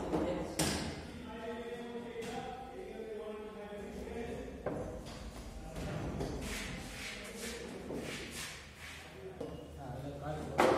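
Men talking in a workshop, with a sharp thump about half a second in and another at about five seconds, then scattered knocks and rustles of hands and tools working wires on a small electric motor on a workbench.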